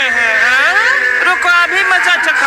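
Cartoon character voices speaking with sliding, swooping pitch over background music.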